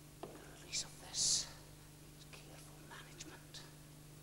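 Faint whispering: a few short hissing sounds about a second in, with scattered soft clicks and a low steady hum underneath.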